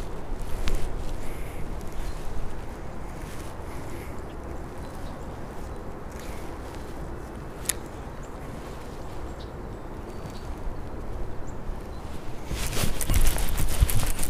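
Wind and clothing rubbing on a chest-mounted camera mic, with reel and rod handling noise. There is one sharp click about eight seconds in, and a louder burst of rustling and knocks near the end as the rod is swung.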